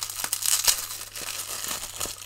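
Packaging crinkling and rustling as it is worked off a new wristwatch, a dense crackle with scattered sharper snaps, the loudest a little past a third of the way in.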